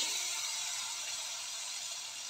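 Pan of mushrooms, onions and spices frying in oil, sizzling steadily just after wet ginger-garlic paste has gone in. The sizzle eases off slowly.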